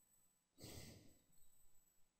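Near silence broken by one sigh, a single breath out, starting about half a second in and fading over the next second.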